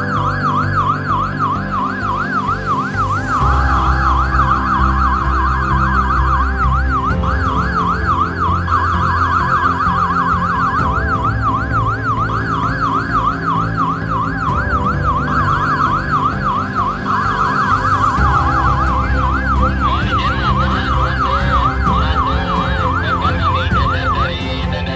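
Ambulance siren in a fast yelp, its pitch sweeping up and down about three times a second, with backing music underneath.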